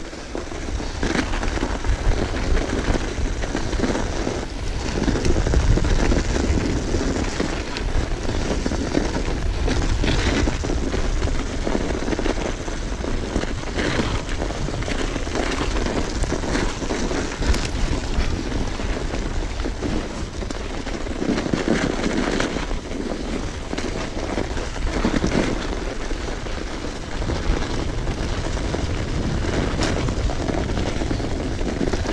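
Mountain bike riding fast down a snow-covered road: steady wind rush on the microphone over a low rumble of tyres rolling on snow, with scattered crackles from the tyres and bike.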